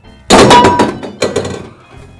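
A metal tin can thrown into a plastic wheeled recycling bin, landing with a loud clatter about a third of a second in and ringing. It knocks again about a second in as it settles.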